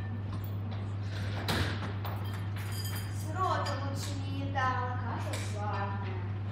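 Voices speaking quietly in a large hall over a steady low electrical hum, with a single clink about one and a half seconds in.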